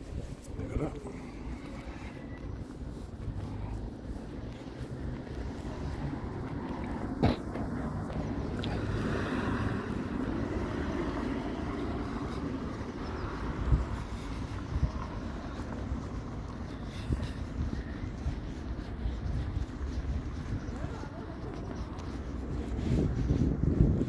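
Outdoor street ambience: wind rumbling on the microphone and road traffic going by, with two brief sharp knocks, about seven and fourteen seconds in.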